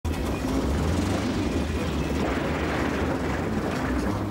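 Film soundtrack from a TV broadcast: a vehicle's engine running with a steady low rumble.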